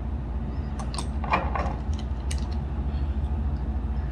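A steady low hum runs under a few light clicks and clinks between about one and two and a half seconds in, as a glass serum dropper and its bottle are handled.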